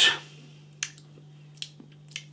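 Two short wet mouth clicks, lip smacks from tasting beer, about a second in and again near the end, over a low steady hum.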